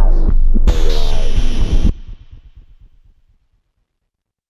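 Drum and bass beat at 183 BPM played on a Teenage Engineering EP-133 K.O. II sampler, with heavy sub-bass and a gliding pitched sample. It stops a little under two seconds in, and a short tail fades out over the next second and a half.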